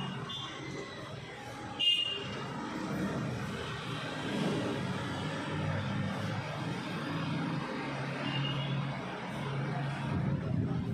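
Urban street traffic heard through an open window: a steady drone of vehicles, with a short high-pitched beep about two seconds in and a fainter one near the end.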